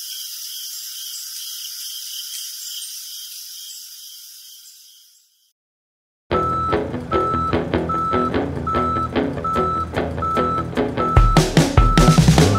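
A hissing sound effect with fast faint ticking, which cuts off about five seconds in. After a second of silence, a U-Haul box truck's reversing alarm beeps steadily, about three beeps every two seconds, over a busy background. Drum-heavy music swells in near the end.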